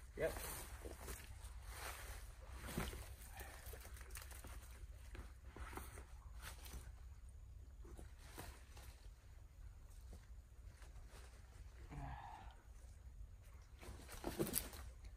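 Footsteps and rustling in dry leaf litter and brush as someone climbs down a slippery bank: soft irregular crunches and crackles, one louder crunch a few seconds in.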